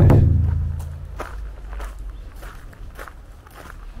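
Footsteps of someone walking along a path, a step every half second or so. A loud low thump at the very start fades away over about a second.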